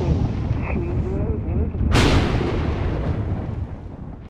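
Thunder-like sound effects under an animated logo sting: a deep, continuous rumble with a sharp crack about two seconds in, then dying away toward the end.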